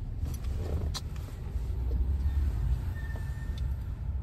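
Steady low rumble of a moving car heard from inside the cabin, with a single light click about a second in.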